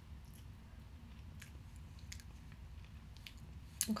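A person eating a spoonful of icy ice cream: a few faint, short mouth clicks and smacks spread over about four seconds, over a low steady room hum.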